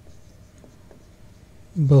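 Marker pen writing on a whiteboard: faint short strokes, then a voice starts speaking near the end.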